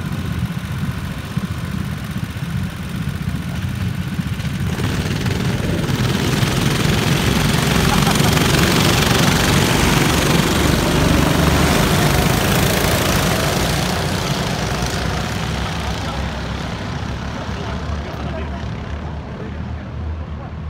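A pack of rental go-karts accelerating away from the start and passing close by, their small engines swelling to a peak about halfway through and then fading as they move off. A steady low rumble, like wind on the microphone, runs underneath.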